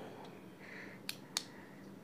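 Two light, sharp clicks about a quarter second apart from hands handling a small die-cast model car, over a quiet background.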